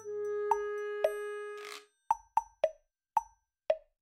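Edited-in music cue: a held synth note with two plucked hits in the first two seconds, followed by five short, cartoonish plop sound effects spaced about half a second apart.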